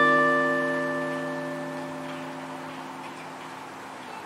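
Electric guitar chord ringing out, several notes held together and fading slowly away as the song ends.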